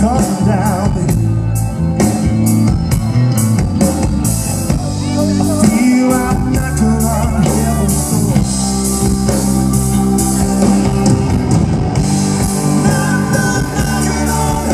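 Live rock band playing: distorted electric guitar, a drum kit with cymbal crashes, and a male lead vocal, at a steady loud level.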